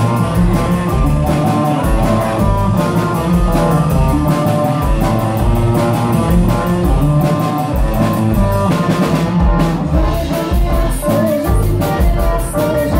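Live rock band playing: distorted electric guitars over a steady drum-kit beat, with keyboard, heard from the audience floor.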